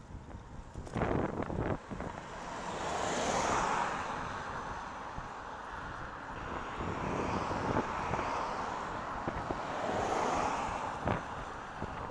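Road traffic heard from a moving bicycle: two vehicles pass, each a swell of tyre and engine noise that builds and fades, peaking about three and ten seconds in. Wind on the microphone runs underneath, with a few short knocks about a second in.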